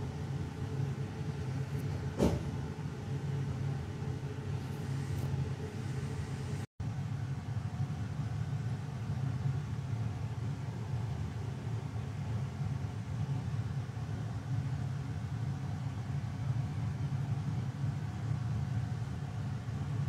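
Steady low hum of a kitchen fan, with one short knock about two seconds in. The hum drops out for a split second near seven seconds, then carries on unchanged.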